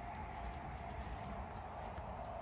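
Faint, steady outdoor background noise with a low rumble and a faint steady hum; no distinct event.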